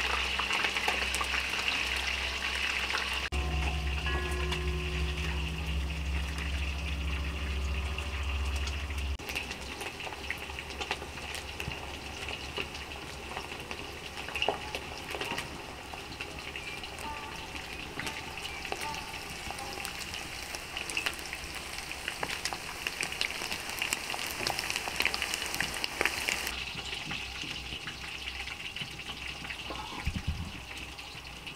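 Chicken pieces frying in oil in a large metal pot over a wood-fired stove: a steady sizzle dotted with small crackles and pops.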